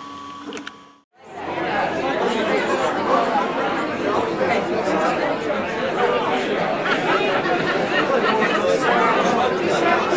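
A crowd of many people talking at once in a continuous babble. It starts after a brief gap about a second in; before that there is a faint steady hum.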